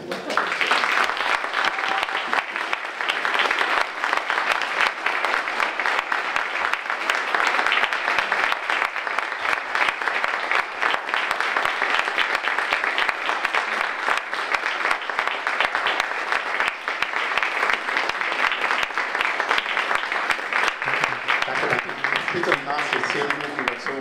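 Audience applauding: many people clapping in a dense, steady patter that starts suddenly and keeps up for about twenty seconds.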